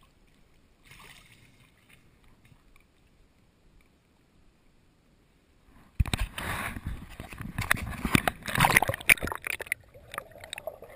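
Near quiet for about six seconds, then a sudden loud stretch of splashing and bubbling right against a GoPro's waterproof housing as it goes under the pool water, with many sharp knocks and rubs on the case.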